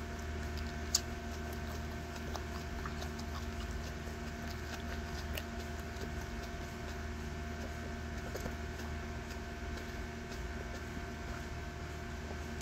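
Steady background hum holding several steady tones, with scattered faint clicks and one sharper click about a second in.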